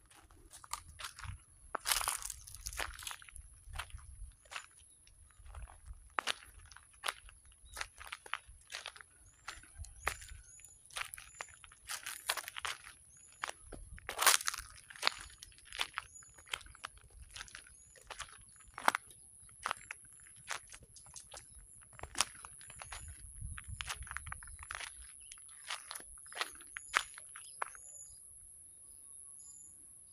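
Footsteps crunching irregularly through grass and dry leaf litter. A steady high insect trill runs behind them.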